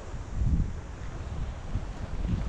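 Wind buffeting the camera microphone in uneven gusts, a low rumble that swells about half a second in.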